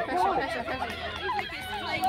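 Several people's voices chattering and calling out at once, overlapping.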